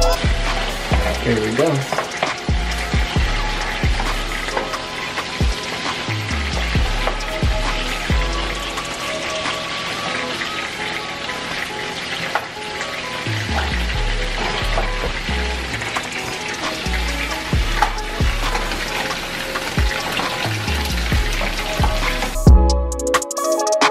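Steady sizzle of food frying in a pan, under background music with a deep, regular bass beat.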